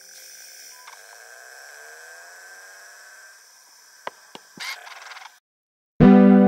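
Faint, quiet stretch of an ambient electronic music track: soft held synth tones with slow sweeping pitch glides, a few short clicks near the end, then a sudden cut to silence.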